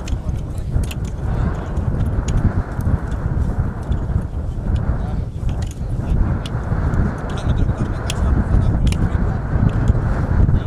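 Indistinct chatter of a group of people outdoors over a heavy, steady low rumble of wind on the microphone, with scattered short knocks and clicks of spades and hoes digging into the soil.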